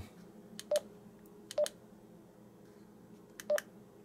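Retevis RT52 handheld DMR radio's keypad beeping as its buttons are pressed to step through the menus: three short, high beeps spread across the few seconds.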